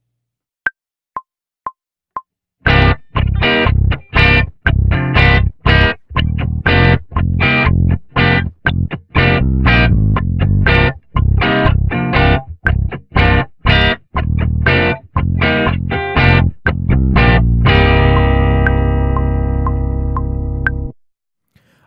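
A metronome counts in with four clicks half a second apart, the first higher. Then a distorted electric guitar and an electric bass play short, choppy chords together, in time with the clicks. Near the end they land on a held chord that rings out and fades; the parts have been quantised with Flex Time and match the grid and metronome.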